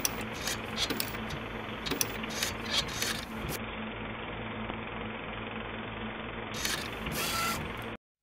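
Typewriter sound effect: irregular key strikes clacking over a steady mechanical whir and low hum. The strikes stop about three and a half seconds in, a few more come near the end, and the sound cuts off at the end.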